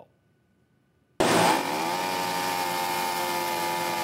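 After about a second of near silence, a Stihl chainsaw comes in suddenly at high speed, its pitch easing down a little and then holding steady.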